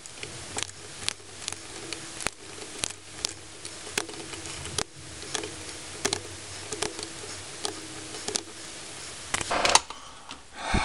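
Light, irregular clicks and taps of multimeter test probe tips on the pads of an LED bulb's board as each LED is tested, over a faint steady hum; a louder handling noise comes just before the end.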